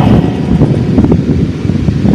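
A loud, low rumbling noise with no voice over it, rising and falling unevenly in level.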